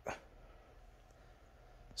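Near silence: quiet room tone, with one brief click right at the start.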